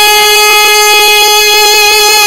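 A naat singer's voice holding one long, steady high note after a brief wavering run, without words, as part of the melody.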